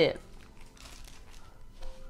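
Thin paper pages rustling and crinkling softly as a Bible is leafed through to a passage.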